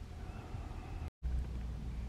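Faint open-air ambience, mostly a low, uneven rumble of wind on the microphone, with a brief dropout to silence about a second in.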